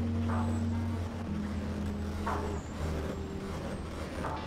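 A low, steady drone of held tones that step down in pitch about a second in and again near three seconds, with a faint brief squeak about every two seconds.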